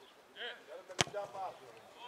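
A football kicked once about a second in, a single sharp strike, amid players' shouts.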